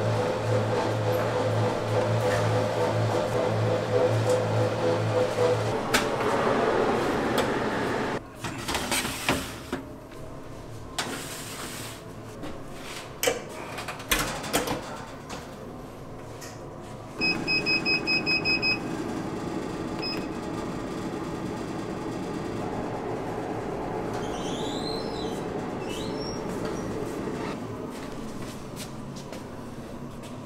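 Steady machine hum, then metal baking trays clattering as they are handled and slid into a Sinmag convection oven. About seventeen seconds in, the oven's control panel gives a quick run of short high beeps and one more beep a moment later. After that the oven runs with a steady hum.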